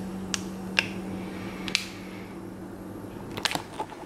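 Crinkling of a plastic snack-bar wrapper being handled: a few sharp crackles spread through, with a quick cluster near the end, over a low steady hum that stops about halfway.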